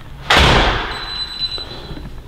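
A door shutting with a sudden bang about a quarter second in, then a short ringing die-away: the house door to the garage being closed.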